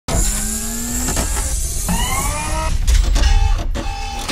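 Loud produced intro sound effect under a title card: a heavy low rumble with pitched tones that glide upward about halfway through, then a few sharp hits near the end.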